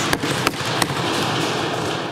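Legislators thumping their desks in applause: many sharp, irregular knocks that run together into a dense, steady clatter about a second in.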